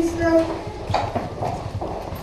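Computer keyboard being typed on: a quick run of key clicks, with a short stretch of voice at the start.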